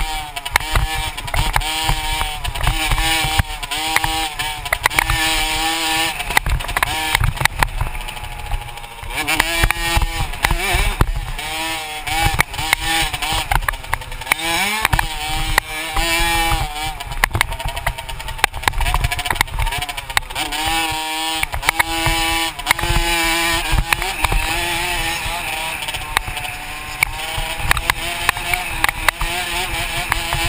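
Dirt bike engine revving hard on a motocross track, its pitch climbing and dropping again and again as the rider accelerates, shifts and backs off. Wind buffets the microphone and the bike jolts over rough ground.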